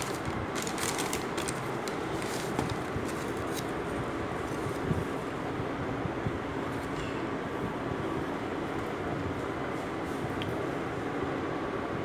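A steady machine drone fills the background. For the first three seconds or so, tissue paper crinkles in short crackles as it is pulled back from a shoe in its cardboard box. A few lighter clicks follow later as the shoe is handled.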